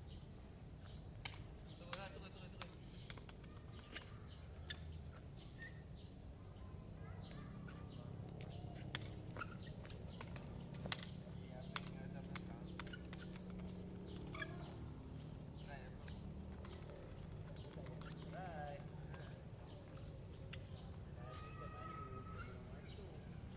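Sharp, scattered clacks of a woven sepak takraw ball being kicked back and forth, the loudest about eleven seconds in, over a faint steady background.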